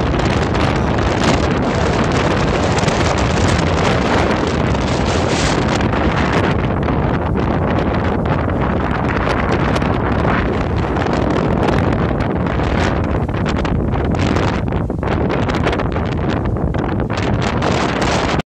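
Strong wind blowing across the microphone: a loud, steady rush of wind noise with gusty rises and dips, thinning a little in the highs in the second half.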